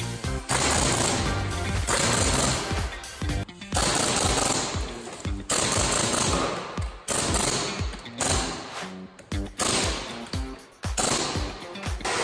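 Pneumatic impact wrench hammering in wheel bolts to tighten a refitted wheel. It runs in repeated bursts of about one to one and a half seconds, some eight in all, with short gaps between them.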